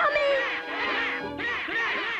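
A crowd of cartoon purple Smurfs making their squawking "Gnap!" cries, many short rising-and-falling squawks overlapping, over background music.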